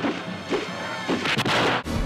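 Film fight-scene soundtrack: a run of punch and kick impact effects over action music. Near the end it cuts abruptly to a different, bassier fight soundtrack.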